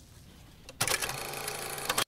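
A steady mechanical whirring clatter starts abruptly about a second in and cuts off abruptly, after a short quiet stretch.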